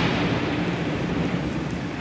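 Rolling thunder over a steady hiss of rain, slowly fading. Another clap of thunder begins at the very end.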